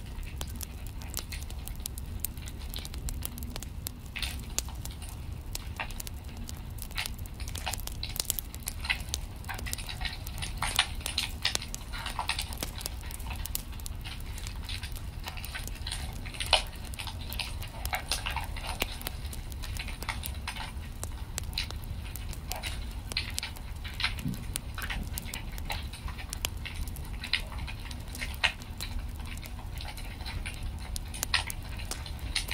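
Wood fire in a fireplace crackling: irregular sharp pops and snaps over a low steady rumble, with one louder pop a little past halfway.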